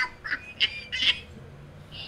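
A man laughing in a few short, breathy bursts.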